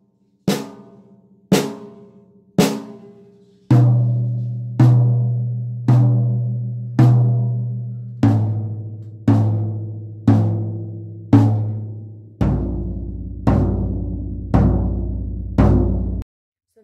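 Single strokes of a wooden drumstick around a drum kit, about one a second: three bright, sharp hits, likely on the snare, then four each on two rack toms and the floor tom, each hit left to ring. The drum tone gets lower from group to group as the strokes move across the rack toms into the floor tom.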